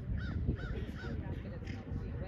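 A bird calls in a quick run of short, evenly spaced notes during the first second, over low rumbling wind noise on the microphone.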